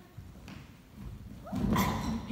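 An actor falling onto a wooden stage floor with a thud and the clatter of a wooden crutch, about one and a half seconds in, together with a sudden vocal cry of alarm. Before this come a few soft footsteps on the boards.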